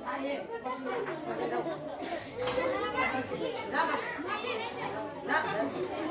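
A crowd of children chattering and talking over one another, many voices at once.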